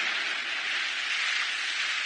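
A steady, even rushing noise, a sound effect on the anime's soundtrack.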